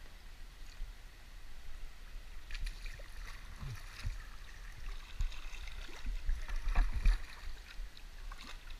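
Kayak paddle strokes splashing in the water, irregular and growing busier a few seconds in, loudest near the end, over a steady low rumble.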